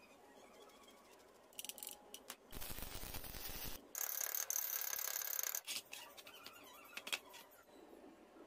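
Steel parts of a homemade hand-operated metal bending tool grinding and squeaking against each other as a rebar lever works it, with a rough scraping stretch in the middle followed by a high metallic squeal. Scattered light metal clicks follow.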